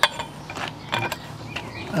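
A sharp click, then several light clicks and knocks of a metal bait pump being handled and set against a tiled ledge.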